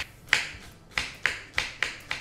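Kitchen knife slicing cabbage into fine shreds on a wooden cutting board, the blade knocking on the board about three times a second.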